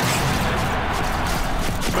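A transition music sting that starts suddenly and loudly with a crashing hit, over a dense wash of football stadium crowd noise.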